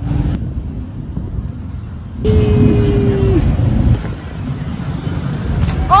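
Busy street traffic, a steady low rumble of vehicle engines running, with a steady tone lasting about a second a little after two seconds in.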